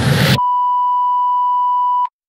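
Electronic dance music ending on a rising synthesized noise sweep that cuts off abruptly less than half a second in, replaced by a loud, steady, pure synth tone like a test-tone beep, held for about a second and a half.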